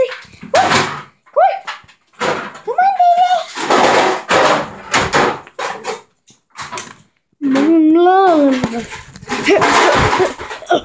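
Rough play between a child and a pet dog: scuffling with repeated thumps and knocks, several short rising cries in the first few seconds, and a long wavering cry about seven and a half seconds in.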